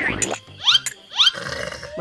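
Cartoon-style comedy sound effects: quick rising 'boing'-like chirps over light background music with a steady bass line. Short breathy, hissing gasps sit between them.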